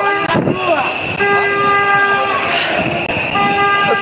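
A horn sounding two steady, even-pitched blasts, each about a second long, with voices in the street around it.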